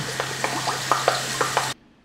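Eggs and rice frying in a hot skillet, sizzling as soy sauce is poured in, with small crackles over a steady low hum. The sound cuts off abruptly near the end.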